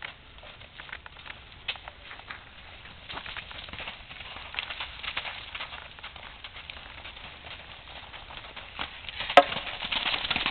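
Pony's hoofbeats on sand arena footing at a canter: soft, irregular thuds that grow louder near the end as the pony comes close, with one sharp knock just before.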